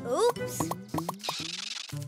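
Cartoon sound effects: a quick run of about five short plops, each falling in pitch, as carrots are pulled down into the ground one after another, followed by a brief hiss, over light children's background music.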